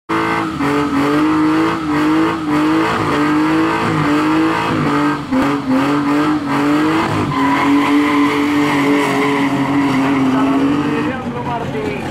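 Car doing a burnout: engine held at high revs with the rear tyres spinning and squealing. The pitch wavers up and down, then holds steady and stops near the end.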